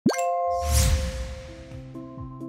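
Audio-logo sound effect: a quick rising pop, then a ringing bell-like chime held under a low boom and a shimmering swell that fades over about a second.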